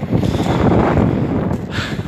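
Wind blowing into a phone's microphone: a loud, uneven rushing noise.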